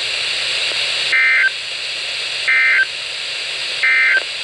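Three short bursts of EAS/SAME digital data tones from a Midland weather radio's speaker, each about a third of a second long and about 1.4 seconds apart, over steady radio hiss: the End of Message code that closes the NOAA Weather Radio severe thunderstorm warning.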